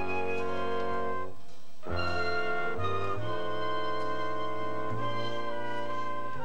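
Orchestral background score with brass: sustained chords that shift every second or so, with a short break in the lower parts about a second and a half in.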